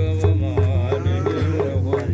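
Menzuma, an Ethiopian Islamic devotional song: voices chanting a melody over a steady frame-drum beat of several strikes a second.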